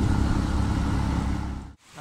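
Motorcycle running along a road: a steady low engine and road rumble that cuts off abruptly near the end.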